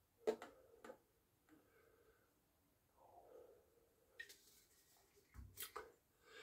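Mostly near silence, broken by a few faint clicks and knocks of an aluminium beer can and a stemmed glass being handled as the last of a can of stout is poured. The sharpest click comes about a third of a second in, and a low knock follows near the end.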